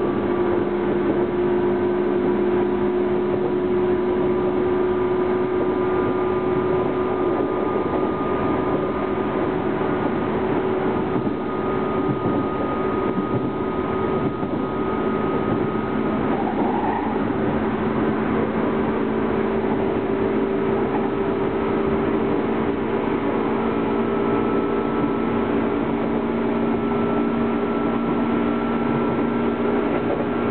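A JR 205-series electric commuter train running at speed, heard from inside a carriage: steady wheel and rail rumble under the whine of its traction motors and gears. The whine tones climb slowly in pitch over the second half.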